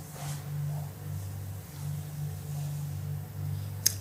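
A steady low hum in a quiet room, with faint soft rustling near the start and a single sharp click just before the end.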